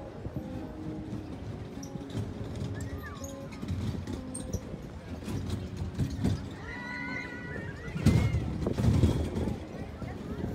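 Busy seaside pier ambience: background chatter of passers-by with faint music, a few high gliding calls about three and seven seconds in, and a louder low rumble about eight seconds in.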